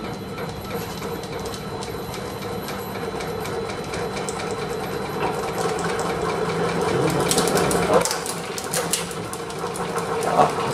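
Shaking table running under a balsa-wood tower model: a steady mechanical hum with a rhythmic clatter that grows gradually louder. A flurry of sharp rattling clicks comes about seven to nine seconds in.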